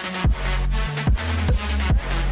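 Electronic dance music with a heavy kick drum about twice a second over deep, sustained bass notes.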